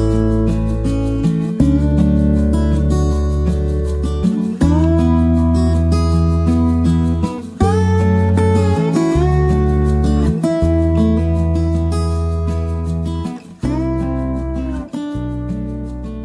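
Background music: strummed acoustic guitar chords with a steady beat, fading out near the end.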